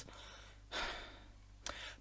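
A man sighs: one breathy exhale that swells and fades over about half a second, followed by a short click just before he speaks again.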